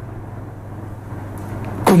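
A steady low hum with a faint hiss in a pause between speech; a man's voice starts right at the end.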